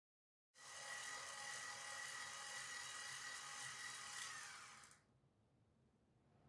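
Electric stand mixer running with its wire whisk beating buttercream: a steady, high motor whine. It starts about half a second in and drops away to a faint hum about five seconds in.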